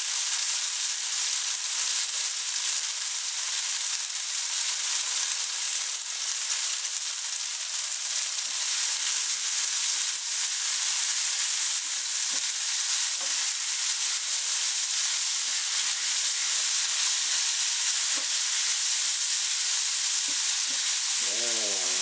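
Udon noodles frying in butter or margarine in a non-stick frying pan, sizzling steadily, while a wooden spoon stirs them.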